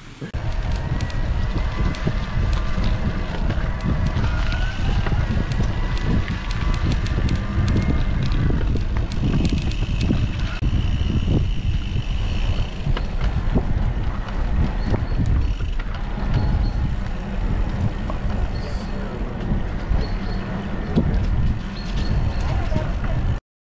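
Heavy wind rumble on the camera microphone with tyre noise as an electric mountain bike is ridden along a path. A thin whining tone comes and goes over the first half.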